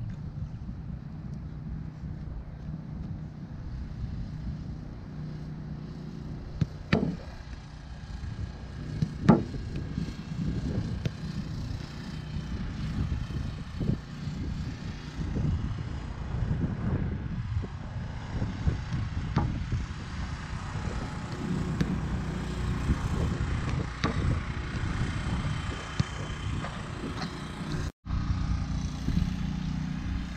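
A few sharp thuds of a soccer ball being kicked, the loudest about seven and nine seconds in, over a steady low rumble.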